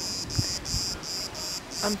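Cicadas singing: a high, pulsing buzz that repeats about three times a second and stops near the end.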